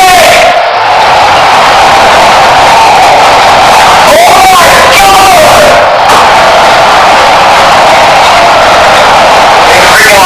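A person screaming and yelling almost without pause, boosted so loud that it is distorted into a harsh, clipped wall of noise, with brief breaks about a second in and about six seconds in. This is someone flipping out at a brother playing an online game.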